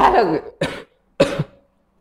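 A person coughing twice in short, rough bursts, about half a second apart, with a throat-clearing quality.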